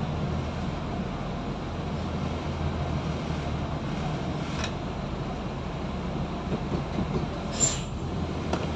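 Low, steady rumble of a coach bus's diesel engine and drivetrain, heard from inside the cabin as the bus creeps into its parking bay.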